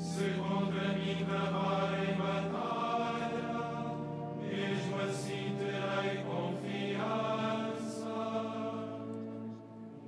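Male choir chanting a psalm of Vespers in phrases, over steady low sustained notes.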